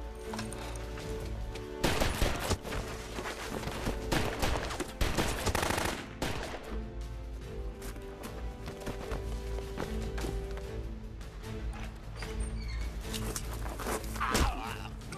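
Film gunfight: volleys of rifle and pistol fire, rapid shots in bursts, over a steady music score. The heaviest firing comes about two seconds in and again around the middle.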